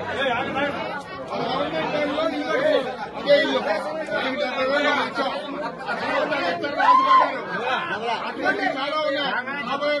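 Chatter of a crowd of people talking over one another at close range, several voices at once.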